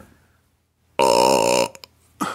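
A man's loud burp about a second in, lasting under a second.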